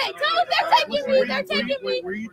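Speech only: a girl's voice talking, not picked out as words.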